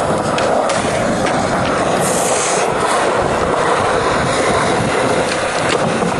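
Skateboard wheels rolling on smooth concrete: a steady, loud rolling rumble with a few light clicks.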